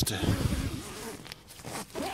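The nylon fly sheet of a Terra Nova Southern Cross 1 tent rustling as its door zip is pulled, fading after about a second.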